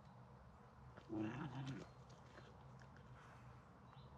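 A Finnish Spitz makes one short, low vocal sound, starting about a second in and lasting under a second. Otherwise only faint outdoor background.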